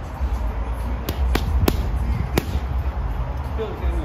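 Boxing gloves striking a heavy punching bag four times: three quick thuds just after a second in, then a fourth, heavier blow, the four punches of a jab, cross, hook and left hook to the body. A steady low rumble runs underneath.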